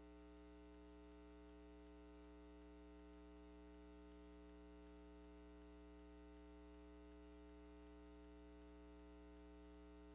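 Faint, steady electrical hum with no other sound: mains hum on the recording.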